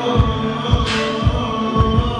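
A hip-hop backing beat plays through the PA: a deep kick drum thumps about twice a second under held synth chords, with a sharp snare hit about a second in.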